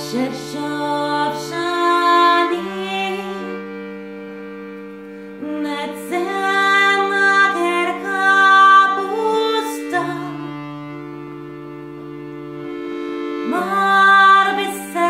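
A woman singing a slow melody in phrases over a piano accordion's long held chords and bass notes. Between phrases, around four seconds in and again from about ten to thirteen seconds, the accordion sounds alone.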